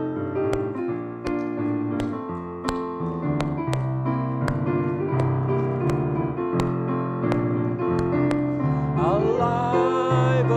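Piano playing the chordal introduction to a gospel song, with hand claps keeping time on the beat, a little more than once a second. Singing comes in near the end.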